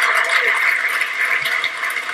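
Large audience applauding and cheering, a steady dense clatter.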